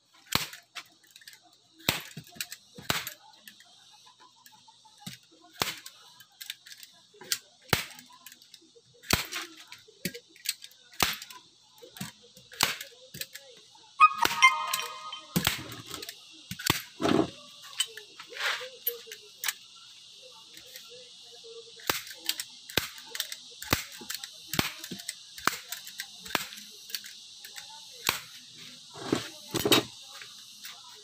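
Hand-held staple gun firing staples into a wooden frame, fastening upholstery fabric: a sharp snap with each shot, repeated dozens of times about once a second at uneven spacing.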